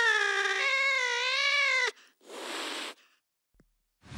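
A long, wavering, meow-like wail sliding down in pitch, cut off abruptly about two seconds in. It is followed by a short hiss-like burst of noise, then silence.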